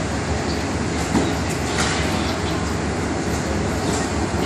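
Steady running noise of a diesel-hauled passenger train standing at a station platform, with a couple of brief knocks.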